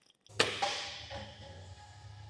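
A single sharp impact hit about half a second in, ringing out over about a second above a low steady hum: an edited-in cinematic transition effect at a scene cut.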